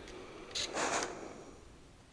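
A steam iron gives a short hiss of steam about half a second in, fading away within a second, while pressing the edges of a fabric bag.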